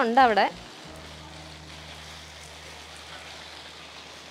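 Garden hose spraying water onto leafy plants: a faint, steady hiss. A woman's voice, singing a phrase, ends about half a second in.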